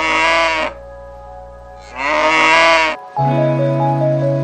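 Cow mooing twice, each call about a second long and fairly high-pitched, rising and then falling. A music tune with steady notes starts just after three seconds in.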